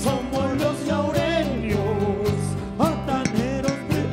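Live Andean wayliya band music: a pitched melody with sliding notes over sustained bass and a steady drum beat.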